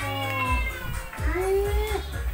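A cat meowing: two long meows, the first falling slightly in pitch, the second rising and then holding.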